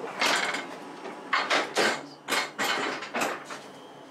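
Irregular knocks and clatters, about six in four seconds, from footsteps and fittings being bumped as people walk through the ship's corridors below deck.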